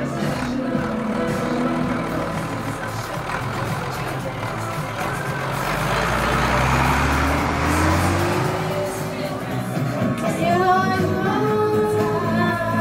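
Music playing steadily. About five seconds in, a low rumble and a slowly rising tone join it for a few seconds.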